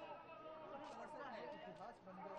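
Crowd chatter: many people talking at once, faint, with no single voice standing out.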